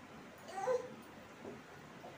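A baby's brief high-pitched whimper about half a second in, with a fainter second little sound a second later.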